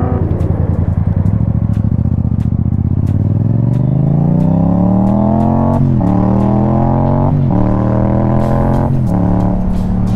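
Yamaha motorcycle engine running low and steady, then accelerating from about three seconds in, its pitch climbing, with three quick dips as the rider shifts up through the gears in the second half.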